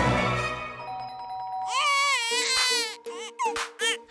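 Tail of a jingle fading out, then a newborn baby's wavering cry starting about halfway in, breaking into a few short cries near the end.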